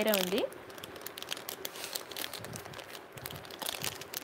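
Plastic packaging crinkling as it is handled: an uneven run of small crackles and clicks.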